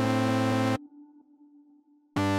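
Trap type-beat instrumental in E minor at 128 BPM. A dense synth chord over deep bass plays for under a second, then cuts out suddenly, leaving only a faint held synth note: a dropout in the beat.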